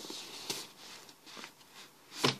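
Faint rustling of an insulated fabric bottle holder as a bottle is pushed down into it, with a light knock about half a second in and a couple of softer taps after.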